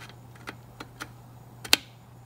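A few light, sharp clicks from hands working at the computer, with one louder click near the end, over a steady low hum from the running PC.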